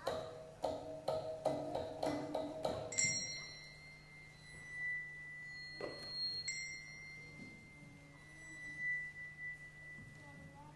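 Free-improvised ensemble music: a quick run of struck pitched notes, then a high, steady, held tone that breaks off near the middle and comes back, with a single knock between. A low steady hum lies under it.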